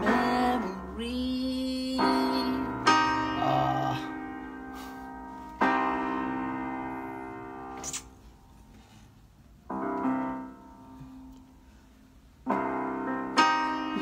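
Portable electronic keyboard playing slow piano-voice chords, about five of them, each struck and left to ring out and fade. There is a near-quiet gap of a couple of seconds before the next chord, and another pause near the end before playing resumes.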